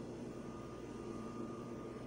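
Steady low machine hum, with a faint high-pitched tone joining about half a second in.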